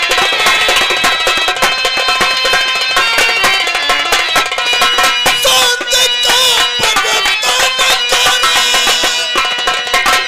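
Live nautanki stage music: rapid hand-drum strokes under steady, held instrumental tones, played continuously and loud.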